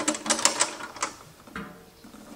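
Metal clicks and knocks as the filter box of a Miller FiltAir 130 fume extractor is worked loose by hand and its latches popped free. There are several sharp clicks in the first second, then quieter handling.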